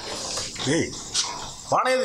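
A man's voice: a short wordless vocal sound that rises and falls in pitch about a second in, with speech starting again near the end.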